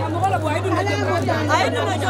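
Chatter of several voices talking over one another in a crowded hall, with a steady low hum underneath.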